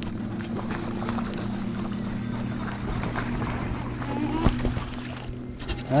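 Steady low hum of a bow-mounted electric trolling motor, with wind on the microphone and water noise. A sharp click comes about four and a half seconds in.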